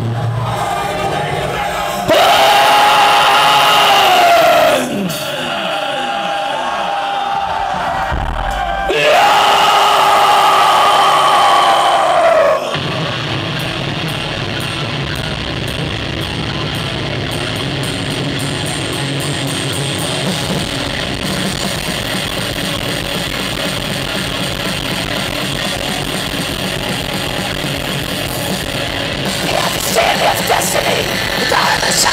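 Thrash metal band playing live, heard loud from the crowd: two long, loud held chords with notes sliding in pitch, then from about twelve seconds in the full band kicks into a fast, driving riff with drums.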